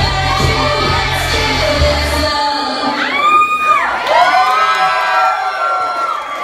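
Loud pop music over a club sound system with a heavy bass beat that cuts out about two seconds in, followed by an audience cheering with high-pitched whoops and screams.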